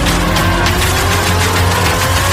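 Electronic background music with a fast steady beat and a tone rising in pitch, building up.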